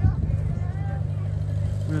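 A steady low rumble, with a brief bump at the start and faint voices of people nearby.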